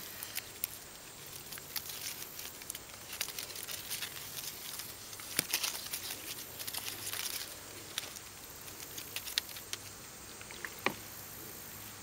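Black electrical tape being peeled and unwound from a wrapped leg wound: irregular crackles and short rips as the adhesive lets go, thickest in the middle stretch, with softer rustling of the absorbent padding.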